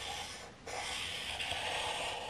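Felt-tip marker tip rubbing across paper while drawing curved lines. One stroke ends about half a second in, and after a brief break a longer stroke follows.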